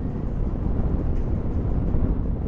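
Steady wind and road noise of a Honda NC 750X motorcycle ridden at road speed: an even low rumble.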